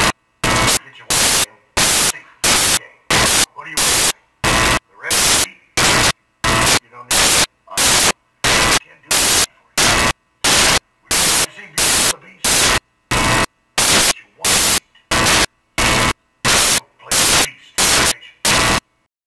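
Loud bursts of static hiss, evenly spaced at about three every two seconds, chopping up much fainter film dialogue that is heard only in the gaps.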